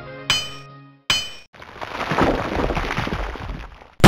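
Two sharp clinks that ring briefly, then a long noisy clatter that swells and fades, and a loud hit at the end.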